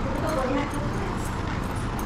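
A person's voice, brief and faint, in the first half, over a steady low background hum.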